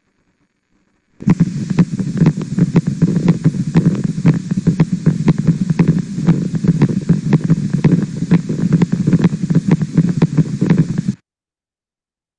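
Needle EMG loudspeaker audio from the abductor digiti minimi muscle: a steady low hum with a rapid, steady train of sharp pops from motor units firing repeatedly as doublets, triplets and singlets, with subtle myokymic discharges in the background. It starts about a second in and cuts off suddenly near the end.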